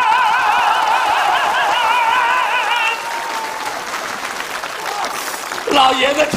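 A singer holding one long high note with a wide vibrato, sliding down and fading out about three seconds in. Audience applause follows.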